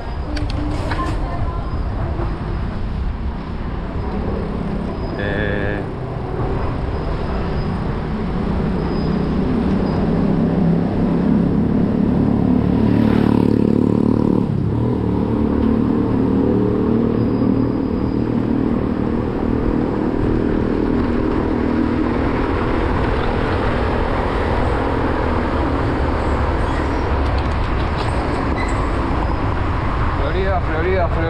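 City street traffic heard from a moving bicycle: a steady low rumble of motor vehicles and road noise. An engine grows loudest between about ten and fifteen seconds in, then its pitch drops and it fades as it passes.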